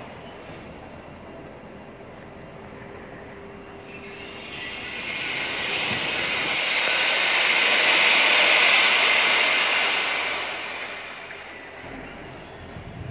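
A vehicle passing along the street: its noise swells from about four seconds in, peaks, then fades away over several seconds.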